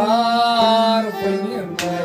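Male voice singing a Kashmiri Sufi song, opening on a strong note held for about a second and then moving on, over a steady harmonium and a bowed sarangi.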